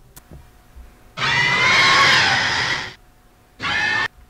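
A long, loud screeching monster cry lasting about two seconds, its pitch wavering up and down, followed near the end by a second, shorter screech. A few faint clicks from the toys being handled come before it.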